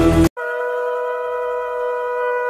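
Background music cuts off abruptly a moment in; then a conch shell (shankha) is blown in one long steady note.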